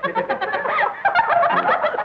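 Birds calling, many short, wavering calls overlapping in a dense chatter.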